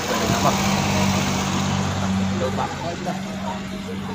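A motor vehicle's engine running by the road: a steady low hum that fades out about three seconds in, over outdoor hiss.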